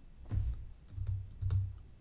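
A few light computer-keyboard clicks with several soft low thumps spread through the pause.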